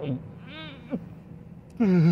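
A man laughing: a few short, high voice sounds that rise and fall in pitch, then a loud gasping breath near the end as the laugh breaks out.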